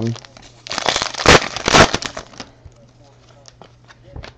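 Foil wrapper of a trading-card pack crinkling for about two seconds as it is opened, followed by faint light clicks of cards being handled.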